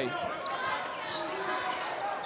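Arena sound of a basketball game in play: a ball being dribbled on a hardwood court over the steady murmur of the crowd.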